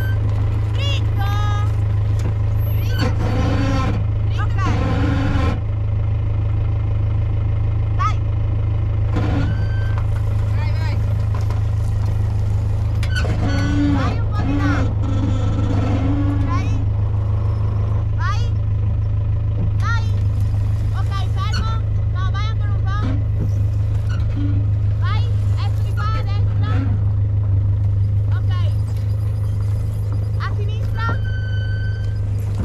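A motorhome's engine running low and steady as the vehicle crawls past at walking pace, with voices calling out over it.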